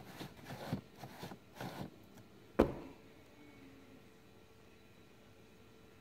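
Soft handling noises on a homemade cardboard combination lock and one sharp knock about two and a half seconds in, then a quiet room.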